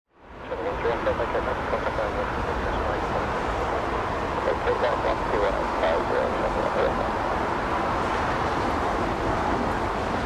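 Steady outdoor background roar, with indistinct voices talking during the first seven seconds or so.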